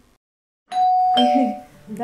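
Doorbell chiming two notes, a ding-dong, after a brief moment of silence.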